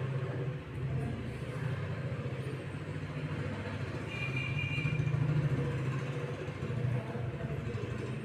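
A steady low mechanical rumble that grows louder about four to six seconds in, with a brief high tone about four seconds in.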